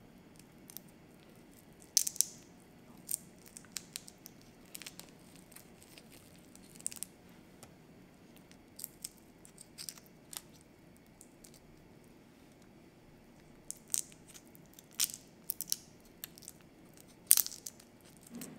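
Raw shrimp being peeled by hand: irregular sharp crackles and clicks of shells snapping off and cling film crinkling, over a faint low hum. The loudest crackles come about two seconds in and near the end.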